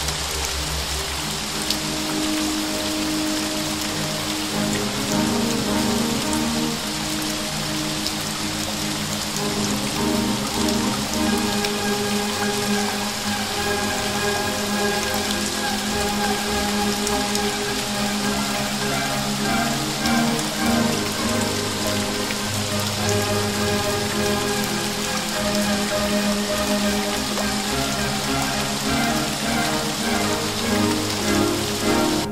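Steady rain falling, mixed with a slow, relaxing classical melody; the music grows fuller about ten seconds in.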